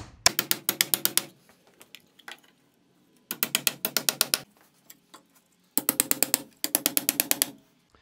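Hammer driving the nails of blue plastic nail-on electrical boxes into wooden wall studs: three runs of quick, sharp strikes with a short ring, about eight a second, with pauses between.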